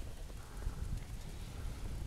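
Wind buffeting the camera microphone: an uneven low rumble and flutter.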